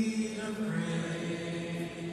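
Large congregation singing a slow worship song together, holding long, steady notes.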